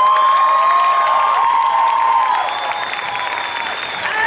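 Audience cheering and applauding. A long whoop rises and holds steady for about two seconds over scattered clapping, and a higher shrill cheer comes in during the second half.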